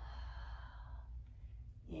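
A woman breathing out audibly through the mouth for about a second: a long, controlled yoga exhale timed to a forward fold.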